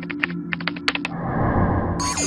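Keyboard-typing sound effect: a quick run of about a dozen clicks in the first second or so, over a steady low music drone.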